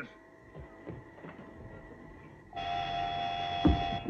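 Faint hum, then about two and a half seconds in a steady electronic tone of fixed pitch with several overtones starts abruptly and holds, with a low thud near the end.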